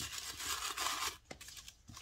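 Tissue-paper gift wrapping rustling and crinkling as a satin ribbon is slid off it, busiest for about the first second, then quieter, with a small click part way through.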